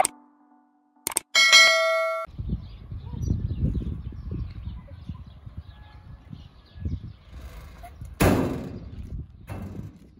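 A mouse-click sound effect about a second in, followed at once by a bright bell chime lasting under a second: the subscribe-button and notification-bell sound effect. After it comes an uneven low rumble of outdoor background noise, with a short noisy rush near the end.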